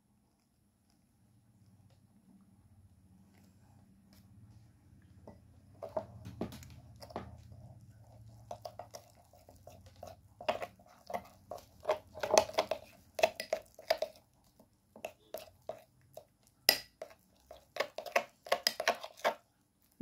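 Metal spoon stirring and scraping a thick paste of ground rice and hot water in a glass bowl: irregular clicks and scrapes. They start after several quiet seconds and grow busier toward the end.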